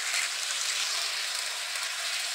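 Hornby Blue Rapier (Class 395) OO-gauge model train running fast on its track with the controller turned well up, a steady even noise from its motor and wheels. The owner hears a louder rumbling from the motor at this speed and puts it down to the motor probably not being run in yet.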